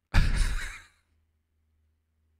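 A man's single heavy sigh, a breathy exhale blown close into the microphone, lasting under a second.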